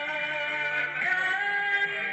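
A man singing into a microphone over backing music, holding long notes with small glides between pitches.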